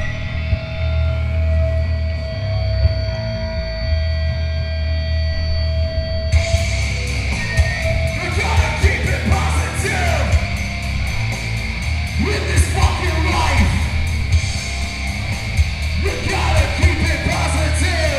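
A hardcore punk band playing live. The song opens on a single held note over low bass, the drums and full band come in about six seconds in, and shouted vocals start a couple of seconds later.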